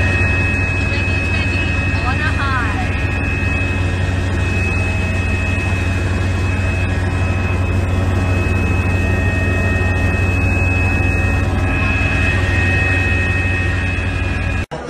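Small propeller aircraft's engine running steadily, heard from inside the cockpit: a loud, even low drone with a steady high whine over it.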